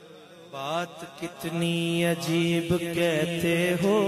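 A man's voice singing a slow devotional melody, a naat-style recitation, beginning about half a second in with a long, wavering, ornamented phrase and held notes.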